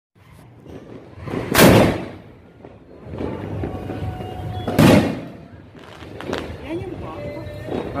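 Two loud firework booms about three seconds apart: a 3-inch aerial shell fired from its mortar tube, then bursting in the sky. A few sharp cracks follow.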